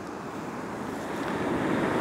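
Small sea waves breaking and washing up a sandy beach: an even rushing that slowly grows louder.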